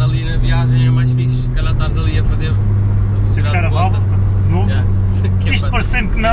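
Opel Corsa OPC's 1.6 turbo four-cylinder engine heard from inside the cabin while driving, a steady low drone whose pitch drops once about two seconds in and then holds steady.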